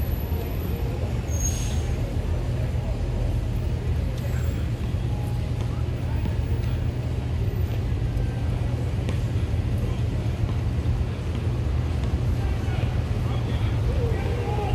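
Steady low rumble of city traffic, unchanging throughout.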